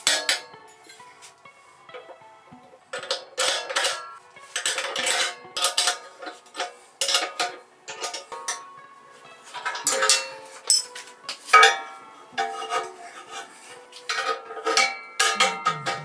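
Heavy steel parts clanking together as steel spacer tubes and flat steel plates are set down and fitted on a steel table, with a wrench on the nuts. The knocks come irregularly, each with a brief metallic ring.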